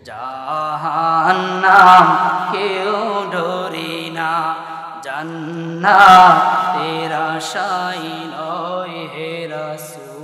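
A man chanting a sermon in a long, drawn-out sung tune through a public-address microphone, over a steady low held tone. His voice swells loudest about two seconds and six seconds in.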